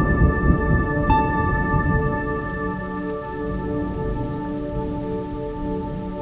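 Rolling thunder and rain, loudest in the first two seconds and then easing, under slow, sustained ambient music chords. A single ringing note is struck about a second in.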